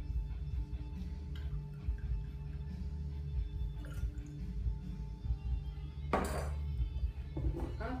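Background music with a steady bass line, with light clinks of a steel bar jigger against a steel cocktail shaker while a liqueur is measured and poured; the loudest clink comes about six seconds in.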